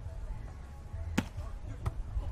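Two sharp smacks of hands striking a beach volleyball, about two-thirds of a second apart, the first and louder one just over a second in: a serve and the receiving pass, over a low steady background rumble.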